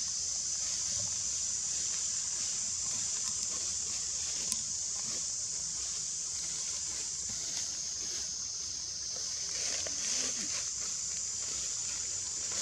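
Steady high-pitched drone of a forest insect chorus, with faint rustling and a few light ticks.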